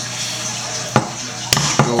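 Hand PEX crimp tool clicking on a copper crimp ring at a brass valve fitting: two sharp metallic clicks about half a second apart as the jaws are set on the ring.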